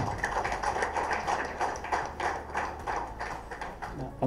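Audience applauding: a dense, steady patter of hand claps.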